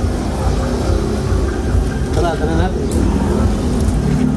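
A steady low rumble, with a brief faint voice about two and a half seconds in.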